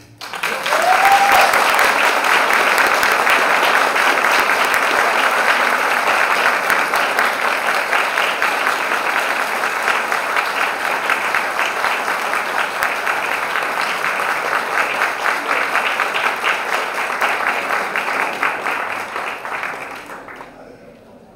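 Audience applauding: dense, steady clapping that breaks out just after a choir's closing chord and dies away near the end.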